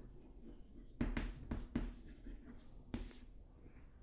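Chalk writing on a chalkboard: a few short scratching strokes, most of them between about one and three seconds in.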